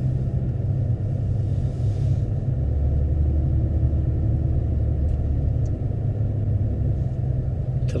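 A car driving, heard from inside the cabin: a steady low rumble of road and engine noise.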